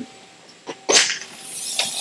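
A short sharp burst about a second in, then a steady high hiss that builds up and keeps going from the bellows lifecycle test machine as its cabinet is opened.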